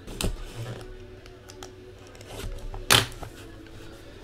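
Cardboard trading-card hobby box being opened and handled: rustling and scraping with two sharp snaps, a small one near the start and a louder one about three seconds in.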